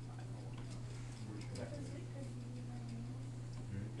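Quiet classroom pause: a steady low electrical hum with faint, low voices murmuring about midway, and faint scattered ticks.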